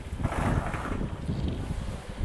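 Wind buffeting the camera's microphone: a steady low rumble, with a brief hissing rush in the first second.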